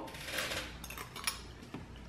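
A person eating a spoonful of soup: quiet mouth and chewing noises with a few light clicks of a metal spoon, the loudest a little over a second in, as it touches the ceramic bowl.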